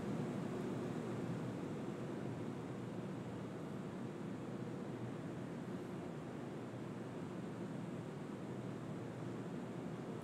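Steady, faint background hiss of the webcast audio, easing a little over the first few seconds.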